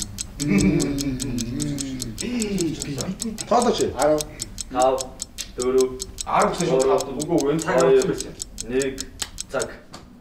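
Clock ticking, fast and even, stopping shortly before the end, with men's voices talking over it.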